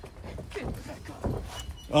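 Faint shouted voices with a couple of soft thumps, in a lull between louder commentary.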